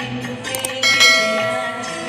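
Two quick clicks, then a bright bell chime that rings out and fades over about a second: the sound effect of a subscribe-button and notification-bell animation, over music.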